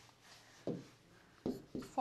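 A pen writing on an interactive whiteboard screen: a few short strokes, one about two-thirds of a second in and two more around a second and a half.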